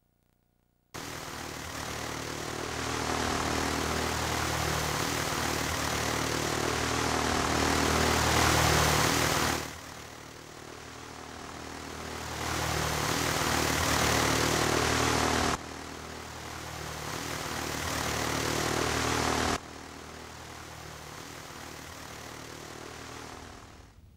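Propeller airplane engine running steadily, in spliced pieces that swell and then cut off abruptly about ten, sixteen and twenty seconds in.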